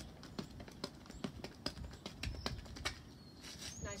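Sneakers tapping quickly on a concrete sidewalk in fast ladder-drill footwork, several light, uneven footfalls a second that thin out about three seconds in.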